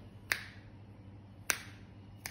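Two sharp finger snaps, about a second apart.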